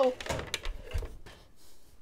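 Soft cooked cauliflower florets dropping and tumbling into the plastic work bowl of a Cuisinart food processor: a few soft thuds and light knocks in the first second, then quieter.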